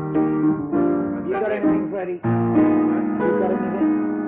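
Piano playing slow, held chords that change every second or so, with a voice briefly singing along a little after a second in. The sound breaks off for an instant just after two seconds before the next chord comes in.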